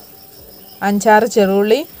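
Faint, steady chirring of crickets in the background, with a woman speaking for about a second in the middle.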